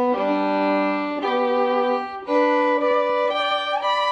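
Music of a single bowed string instrument playing a slow melody of held notes, each about a second long, with a slide up in pitch near the end.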